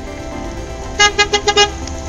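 A car horn sounds five quick toots, starting about a second in, over a steady car-engine rumble, with background music underneath.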